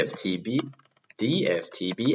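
Typing on a computer keyboard: a quick run of key clicks, heard in a short gap and under a man's speech, which is the louder sound.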